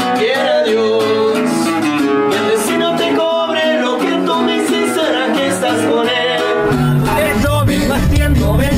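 Acoustic guitar picked and strummed while a man sings along. About seven seconds in, the sound cuts abruptly to a different recording: singing over a fuller backing with heavy bass.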